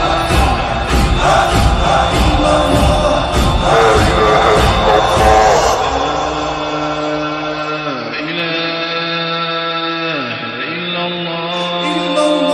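An Arabic nasheed: chanted voices over a deep, steady beat. About halfway through the beat drops out, leaving long held sung notes that slide down at their ends.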